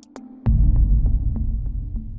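Logo-reveal sound effect: a deep bass hit about half a second in, then a low hum under a run of faint clicks, about three a second, that fade away.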